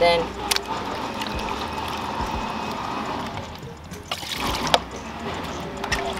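Water sloshing and dripping as pieces of raw beef are washed by hand in a plastic bowl of water and lifted out into an aluminium pot, with a few short knocks near the end, the loudest about three-quarters of the way through.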